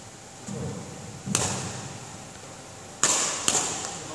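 Badminton rackets striking shuttlecocks: three sharp cracks that ring on in a large hall, one about a second and a half in and two close together near the end. A softer thump comes about half a second in.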